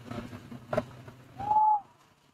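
Rhesus macaque giving a single short, clear whistle-like coo call, slightly arched in pitch and the loudest sound here, over a low steady hum that stops with it; a sharp click comes just before the middle.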